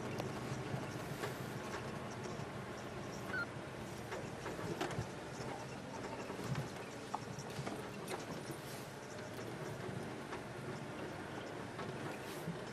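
Open safari vehicle driving along a rough dirt track: a steady low engine hum with scattered knocks and rattles.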